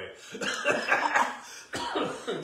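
A person coughing several times in quick succession, then once more near the end: a lingering cough from an illness they are just getting over.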